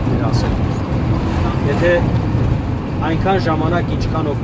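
Steady low engine and road rumble heard inside the cabin of a moving vehicle on a highway, with people talking over it.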